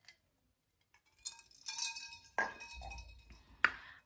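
Faint clinks of a wine glass, a few light knocks about a second in, some of them ringing on briefly as a clear tone, with a sharp click near the end.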